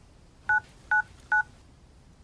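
Telephone keypad touch-tones: three short, identical dual-tone beeps a little under half a second apart, the number 111 being dialled.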